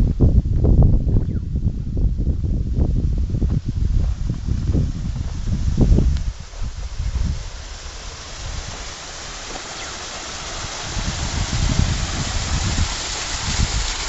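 Wind rumbling and thumping on the microphone for the first few seconds. It gives way to a steady rush of water pouring over rocks at a concrete culvert outlet, growing louder toward the end.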